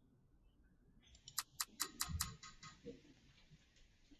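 Computer sound effect from the ClassDojo random student picker: a quick run of about five ticks, some five a second, that fades out as the pick lands.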